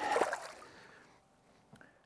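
A released walleye splashing at the water surface as it kicks away from the boat. The splash fades out within about a second.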